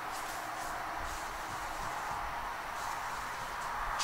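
Steady hiss of room noise, even throughout, with no distinct knocks or strokes standing out.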